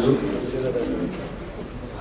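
A pigeon cooing faintly in a pause in a man's speech.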